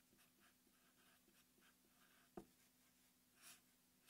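Faint strokes of a felt-tip marker writing on paper, with a short tick about two and a half seconds in, over a faint steady hum.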